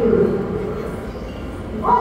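A girl's voice speaking lines in a stage skit, with a short, loud, high-pitched cry near the end.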